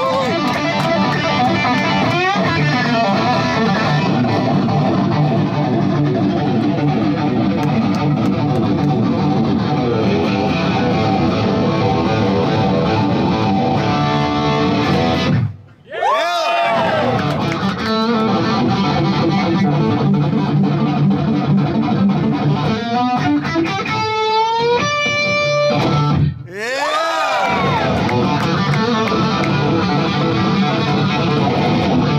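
SG-style electric guitar playing a lead intro live at loud volume. The sound drops out briefly about halfway and again a few seconds before the end, each time coming back with swooping pitch bends, and a quick climbing run of notes comes just before the second break.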